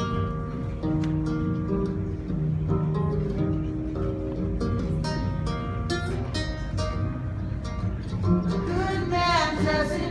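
Solo acoustic guitar playing a song's intro, a steady run of notes ringing out. A man's singing voice comes in near the end.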